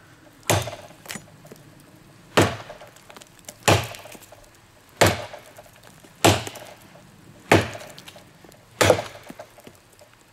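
Heavy, thick-stock Schrade Bolo machete chopping into a living tree trunk: seven sharp chops in a steady rhythm, about one every second and a quarter.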